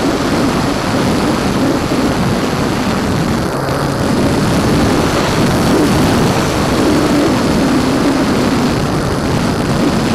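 Electric motor and propeller of a small foam RC plane (Techone Mini Tempo 3D) in flight, heard through its onboard keychain camera's microphone: a steady, noisy drone mixed with wind rush, a little louder about halfway through.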